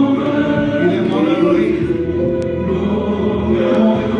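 Gospel worship music: a group of voices singing together over steady held accompaniment.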